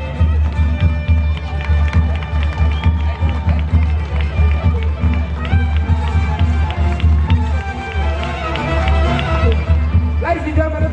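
Greek folk dance music with a heavy steady bass beat under melodic lines, with a voice over it near the end.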